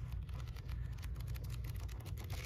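Pages of a paperback book being flipped through by hand: a quick, irregular run of soft paper ticks and rustles.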